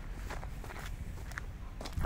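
Footsteps of a person walking, a few soft steps over a low, steady outdoor rumble.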